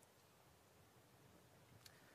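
Near silence: room tone, with one faint click near the end.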